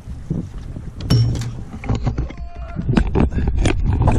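Low rumble of wind and water around a small boat, with a string of sharp knocks and clatters as the camera is handled and swung around.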